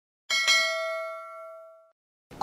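Notification-bell sound effect: a single bright ding with several ringing tones, struck shortly after the start, fading slowly and cut off abruptly near the end.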